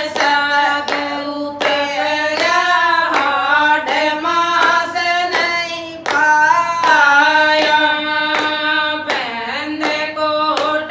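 Women singing a Haryanvi devotional bhajan together, with hand clapping keeping a steady beat.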